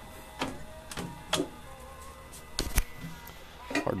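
A car door being handled: a few light clicks and knocks, the sharpest a quick double knock about two-thirds of the way through.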